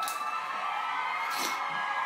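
Studio audience cheering, with long held high shouts.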